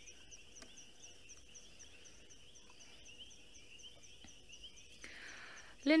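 Faint night chorus of frogs and insects: a steady high trill with regular higher chirps about three times a second. A soft hiss comes in near the end.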